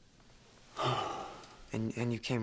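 A person's short, breathy sigh about a second in, fading over half a second, then a man's voice starting to speak near the end.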